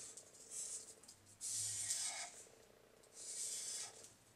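Sharpie marker drawn across thin translucent paper in three faint strokes of about a second or less each, outlining a drawing.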